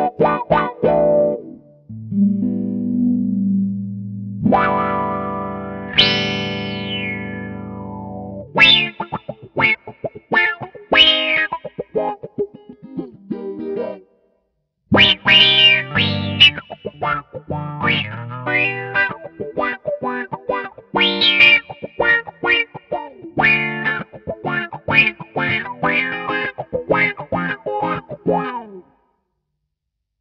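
Electric guitar (a custom Jazzmaster) played through a Mu-Tron III–style envelope filter into a Yamaha THR10 amp: picked notes and chords with a wah-like filter sweep on each attack. A held chord about six seconds in sweeps down from bright to dark. There is a short pause near the middle, and the playing stops shortly before the end.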